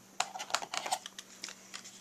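Cardstock and double-sided adhesive tape being handled as the tape is laid and pressed down a paper tab: a run of irregular light clicks and crackles.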